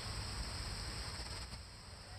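Steady high drone of insects over a low rumble of outdoor background.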